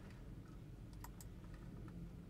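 Faint typing on a laptop keyboard, a few separate key clicks over a low, steady room hum.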